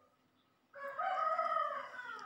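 A rooster crowing once, faint, starting almost a second in: one long call that falls in pitch at the end.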